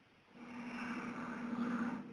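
A man's voice softly drawing out the word "all", breathy and held on one low pitch.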